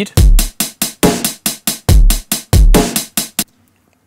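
Short programmed drum-machine beat played back from an Ableton Live drum kit: deep kick hits, a snare and steady eighth-note hi-hats at 140 BPM. The kicks are the loudest part, and the beat stops about three and a half seconds in.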